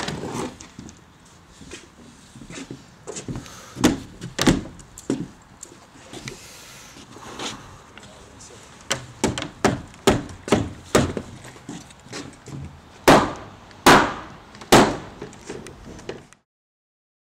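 Hammer blows on wooden framing lumber: scattered knocks, then a steady run of about two blows a second, ending with three loud, spaced blows near the end.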